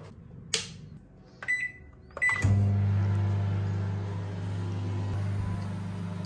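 Microwave oven being set and started: a click and two short beeps from the keypad, then the oven starts about two and a half seconds in and runs with a steady low hum.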